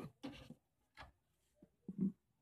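A few short, faint scrapes and rustles as a Mahindra Bolero plastic front grille and its clear plastic wrapping are handled.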